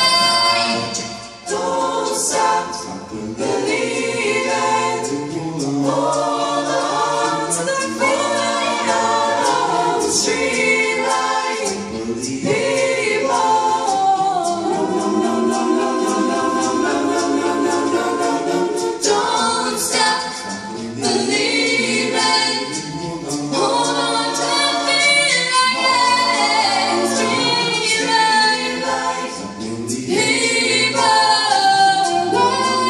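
A cappella vocal ensemble singing in harmony, several voices moving together through sustained chords with no instruments.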